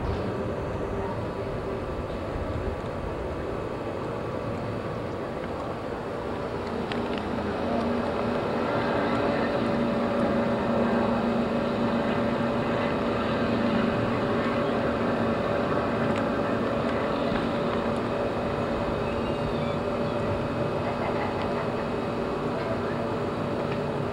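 Outdoor street noise with a motor vehicle's engine running nearby, its steady hum coming in about a third of the way through and holding.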